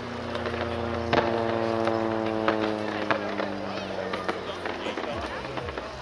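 A propeller aircraft's engine drone, slowly falling in pitch as it passes and fading near the end. Sharp cracks and pops from the aircraft's airborne pyrotechnics sound several times, the loudest about a second in.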